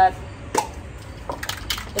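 A few short, light clicks and taps from small objects being handled, spaced irregularly through a pause in a woman's speech.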